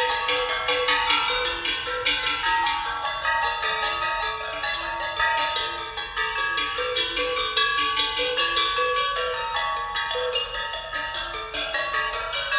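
Percussion ensemble playing struck metal instruments, bells and gongs among them: a quick, steady stream of strokes with bright, ringing pitches.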